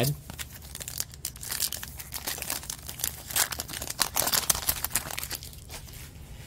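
Plastic trading-card pack wrapper crinkling and tearing as it is opened, a dense run of crackles that dies away about five seconds in.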